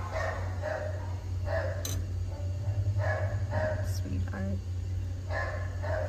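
Dogs barking repeatedly, short separate barks spread through the whole stretch, over a steady low hum.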